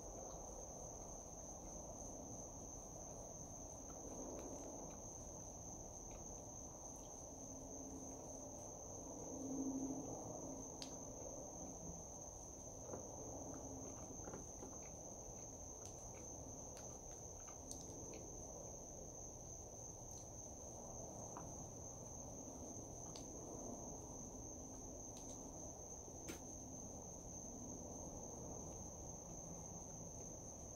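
Faint chewing of a mouthful of hamburger, with soft wet mouth sounds and a few small clicks, under a steady high-pitched tone.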